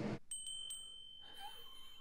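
A faint, high, steady ringing tone, held for about a second and a half, opening with three quick light ticks.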